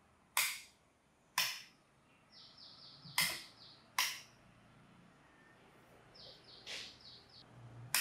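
Five sharp clicks at uneven spacing, with two quick runs of short, high chirps between them.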